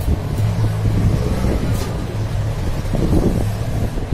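A steady low hum runs throughout, with faint clicks and rustles as wiring connectors on a photocopier's DC controller board are handled.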